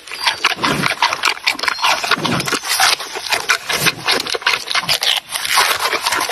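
Giant panda chewing bamboo shoots up close: a dense run of crunching and crackling, with a lower chomp about every second and a half.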